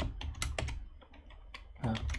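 A short run of keystrokes on a computer keyboard, trailing off after about a second.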